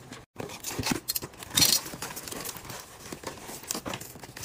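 Paper and packaging crinkling and rustling as items are handled and packed into a cardboard box. The sound drops out briefly near the start, and there is one louder crinkle about a second and a half in.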